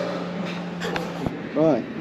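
A steady engine hum holding one pitch, which cuts off suddenly about a second and a quarter in, followed by a man's voice starting to speak.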